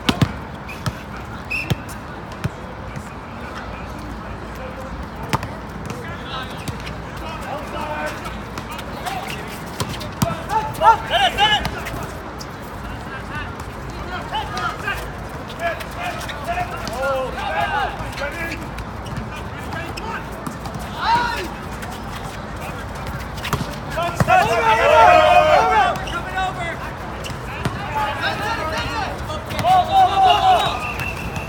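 Volleyball rally on an outdoor hard court: sharp smacks of hands and arms on the ball, with players shouting in bursts over steady background chatter. The loudest shouting comes late in the rally.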